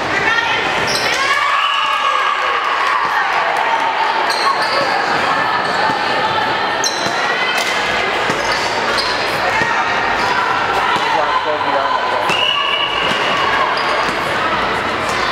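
Indoor volleyball match in a large, echoing gym: players and spectators calling out and cheering, with sharp slaps of the ball being hit and bouncing off the hardwood court.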